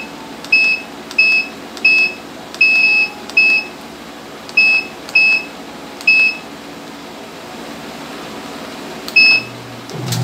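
Universal washing machine control panel's buzzer beeping as its buttons are pressed: about ten short, high beeps at uneven intervals, one held a little longer, with a long gap before the last. A low hum starts just before the end.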